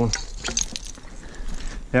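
Digging tool scraping through loose dirt and stones, with a few light clicks of rock as a small rock falls down into the hole.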